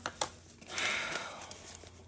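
Paper banknotes being handled: two quick crisp snaps near the start, then about a second of rustling as the bills are shuffled together in the hands.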